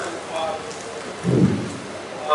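Audience applause dying away into faint voices, with one dull low thump about a second and a half in.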